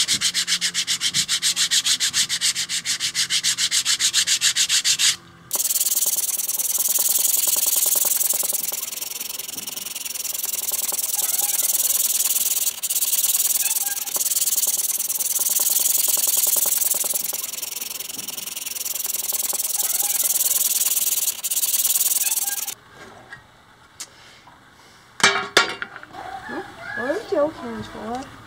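Hand sanding a hardwood propeller blade with a worn piece of 60-grit sandpaper: quick, even back-and-forth strokes at first, then after a brief break a long run of steady rubbing that swells and fades. Near the end the sanding stops, leaving a few knocks and handling noises.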